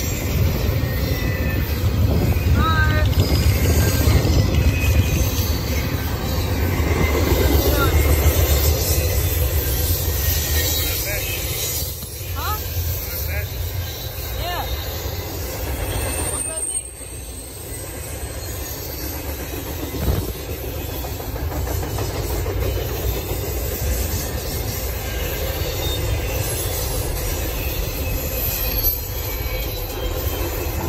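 Intermodal freight train's double-stack container cars rolling past on the rails: a steady rumble of wheels on track, heaviest for the first ten seconds or so, with a few brief wheel squeals.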